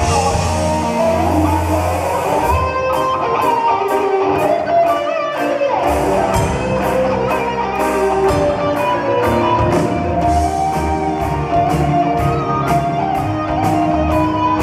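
Live rock music: an electric guitar solo over drums. About two and a half seconds in, the bass and cymbal wash drop away, leaving the lead guitar lines over a steady high tick about two or three times a second.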